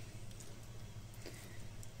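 Knife and fork cutting a fried chicken drumstick on a plate: faint scraping and a couple of light clicks of cutlery, over a steady low hum.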